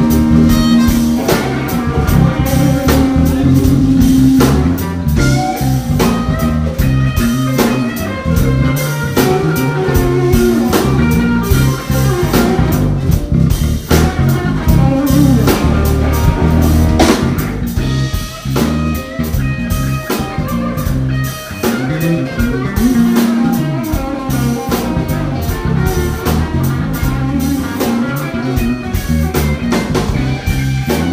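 Live band music: an electric guitar playing a solo over drum kit and rhythm section.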